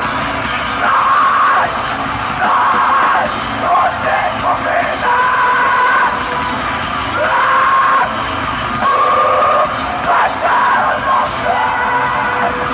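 Folk metal band playing live: electric guitars and drums under a female voice singing held phrases about a second long, one after another.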